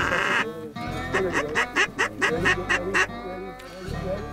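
Geese honking and cackling in a quick series of short calls at about five a second, with some duck quacking, over background music.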